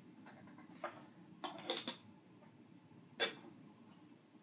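Teaware being handled on a bamboo tea tray: a steel kettle set down, a tea strainer placed on a glass pitcher and a clay teapot taken up. This gives a few light clinks and knocks, a quick cluster about a second and a half in and one sharp clink about three seconds in.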